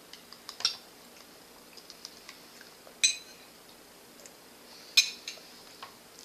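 Metal spoon clinking against a bowl as a toddler spoons up food: three sharp ringing clinks, about a second in, about three seconds in, and near the end, with a few lighter taps between.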